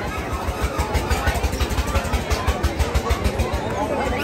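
An engine running steadily with a low, even thud, about seven beats a second, over background crowd chatter and music.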